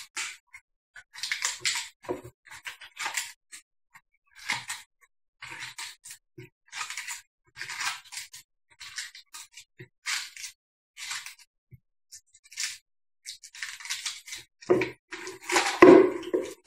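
Lettuce leaves snapping and tearing as they are pulled off the head one by one, a series of short, crisp crackles about once or twice a second.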